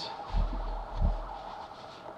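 Two dull low thumps of handling on the workbench, about half a second in and again about a second in, while hands are wiped on a shop towel close to the microphone.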